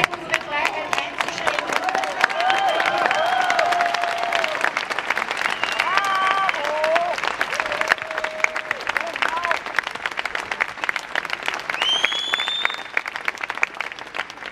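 Crowd applauding steadily for about fourteen seconds, with voices calling out over the clapping in the first half and a high rising whistle near the end.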